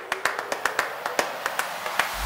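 A few people clapping: separate, uneven claps, several a second, rather than a dense wash of applause.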